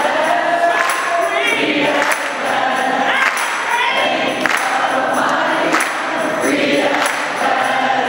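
A choir singing with a woman soloist out in front, with hand claps marking the beat.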